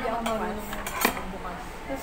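Metal spoon and fork clinking against dishes while eating: a few sharp clinks, the loudest about a second in.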